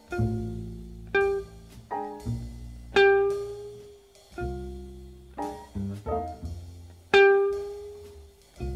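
Jazz recording: a sparse passage of single plucked string notes, deep bass notes under higher ones, each sharply attacked and dying away, about one a second at an uneven pace.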